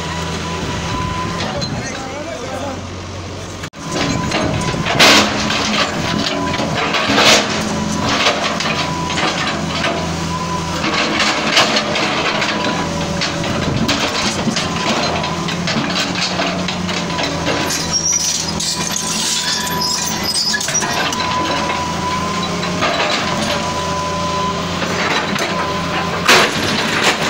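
Excavator's diesel engine running steadily while its bucket breaks a concrete house wall, with sharp cracks and crashes of concrete every few seconds.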